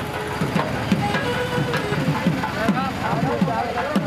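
Crowd at a temple festival procession, many voices talking over one another, with music from the procession fainter underneath.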